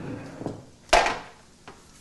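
A plastic squeeze bottle of olive oil set down on a wooden counter, one sharp knock about a second in.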